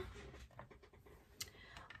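Near silence with a few faint clicks and light handling noises as craft supplies are put away.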